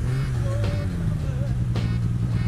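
Snowmobile engine running steadily at low revs, with music playing over it.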